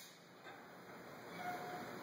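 Quiet room tone with a faint background hiss and no distinct event.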